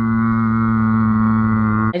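A voice holding one long, low, steady note, loud and unwavering, that cuts off abruptly near the end.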